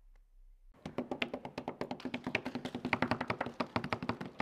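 A few people clapping by hand, beginning about a second in: quick, uneven individual claps rather than the dense wash of a large crowd.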